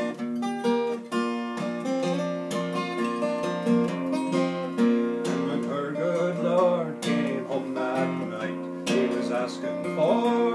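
Steel-string acoustic guitar playing an instrumental passage of a traditional folk ballad, picked and strummed chords ringing steadily with no singing.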